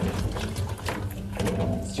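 Wet, irregular slapping and sliding of whole herring being tipped from a plastic bucket and turned by hand in a steel sink, with water splashing, over a low steady hum.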